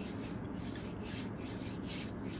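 Hands rubbing together close to the microphone: a back-and-forth rustle about three times a second, over a steady low hum.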